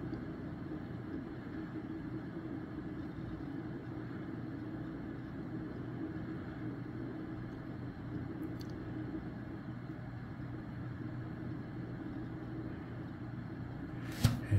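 Steady low hum and hiss of running machinery, with one faint click about eight and a half seconds in.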